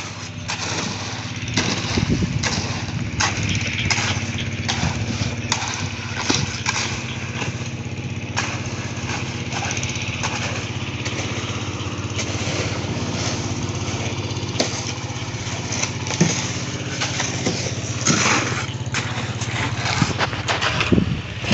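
A small engine running steadily, with repeated scrapes and clinks of shovels working gravel and wet concrete mix on top of it.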